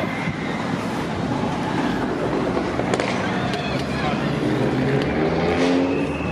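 Road traffic running steadily on a street, with indistinct voices coming in near the end.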